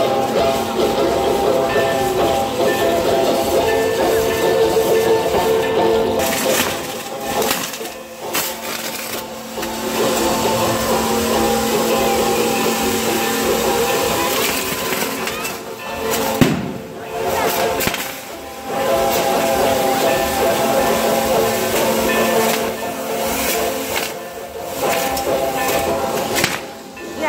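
Music with sustained tones plays over the steady hiss and crackle of a burning fireworks castle throwing out showers of sparks. A few sharper bangs or pops stand out, the loudest about two-thirds of the way through.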